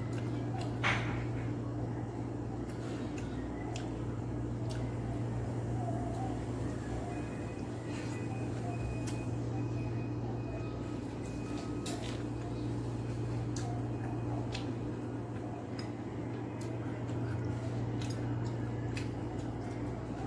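Small eating noises: clicks from fingers and food against a stainless steel bowl, over a steady low electrical hum. There is one sharper knock about a second in.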